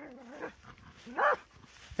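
A dog gives one short bark a little past the middle, with a fainter low drawn-out sound at the start.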